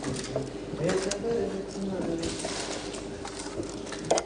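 Low, indistinct murmured talking, with a few light clicks of forks against a dish.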